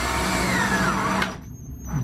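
Cordless drill boring into a cedar floorboard. Its motor pitch sags as the bit bites, and it stops just over a second in.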